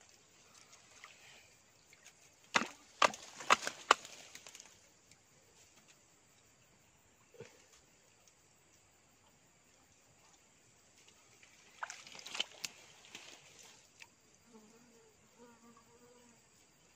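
Dry twigs and brush cracking and snapping in two irregular bursts of sharp cracks, the first and loudest about two and a half seconds in, the second near twelve seconds.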